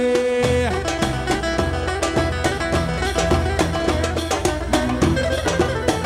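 Live Turkish folk band playing an instrumental passage: plucked bağlama and kanun lines over a steady beat of davul and hand drum. A long held note ends about half a second in.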